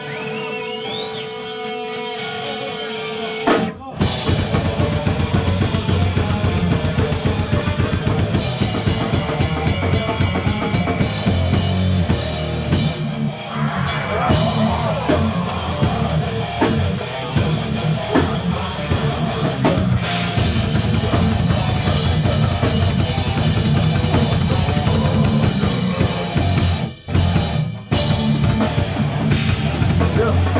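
Heavy hardcore band playing live. A lone distorted electric guitar rings for the first few seconds, with a short rising whine. Then drums, bass and guitars come in loudly together, and the band breaks off briefly about 27 seconds in.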